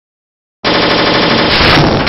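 Loud channel-intro sound effect that starts abruptly about half a second in and runs on at an even level, a dense, noisy texture with a few steady pitched lines beneath it.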